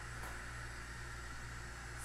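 8-quart Instant Pot Evo venting steam on quick pressure release: a faint, steady hiss over a low hum.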